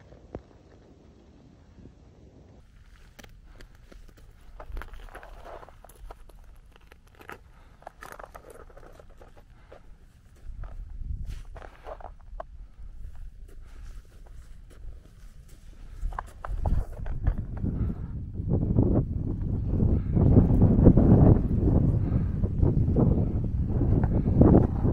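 Footsteps and scuffs on rock and snow, scattered and faint. From about two-thirds of the way through, wind buffets the microphone and grows into a loud, steady rumble.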